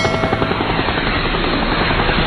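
Folded paper rotor toy spinning fast on its stick: a steady fluttering whir of paper blades beating the air, with a rush of air noise.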